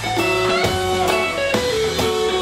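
Live blues band playing: electric guitar notes held and stepping between pitches over bass guitar and drum kit, with drum hits through it.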